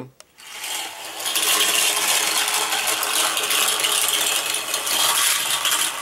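A pack of nine Cars Micro Drifters ball-bearing toy cars rattling down a long plastic track ramp together: a dense, steady clatter of tiny clicks that builds up over the first second.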